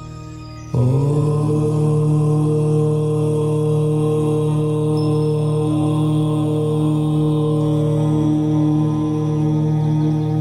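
A long, sustained chanted "Om" that starts suddenly about a second in and is held on one steady pitch, over a soft meditation drone with faint high chime tones.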